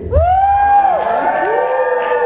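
A man's voice through the PA, vocalizing two long held notes that each swoop up, hold and fall away. The first note is higher, and a lower one follows about halfway through.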